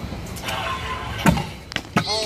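Stunt scooter wheels rolling on concrete, with a sharp knock about a second and a quarter in, the loudest sound, and two lighter knocks near the end.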